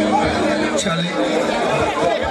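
A man talking through a stage microphone and PA, with other voices chattering around him.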